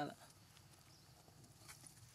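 Near silence after a word of speech at the very start, with one faint click near the end.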